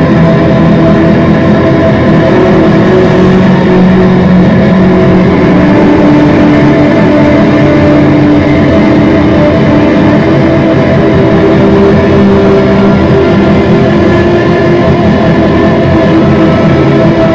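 Amplified violin, bowed and heavily processed with effects, playing a loud, dense wall of held, droning notes. The main pitches shift every few seconds.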